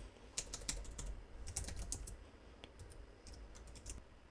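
Keystrokes on a computer keyboard, faint, in about three short bursts of quick clicks.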